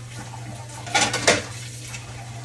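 A quick run of clinks and knocks of kitchenware being handled, about a second in, over a steady low hum.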